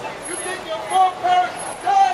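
Voices talking and calling out, with a few drawn-out words, over the noise of passing street traffic.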